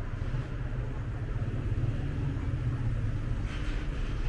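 City street ambience: a steady low rumble of road traffic, with a brief hiss near the end.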